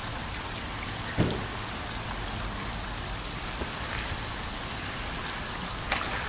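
Steady hiss of light rain falling, with one short knock a little over a second in.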